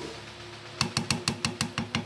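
Metal spoon knocking against the side of a cooking pot of thick mung-bean porridge while stirring. It is a quick, even run of about seven taps a second, starting a little under a second in.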